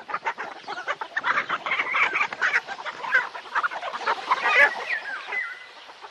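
A flock of birds calling all at once, a dense run of overlapping short chirps and clucks with a few sliding calls near the end.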